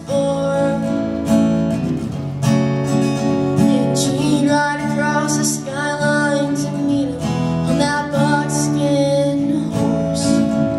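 Acoustic guitar strummed steadily, with a young woman's voice singing over it.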